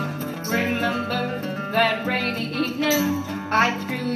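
Two acoustic guitars strumming a country-style accompaniment, with a woman singing the melody over them.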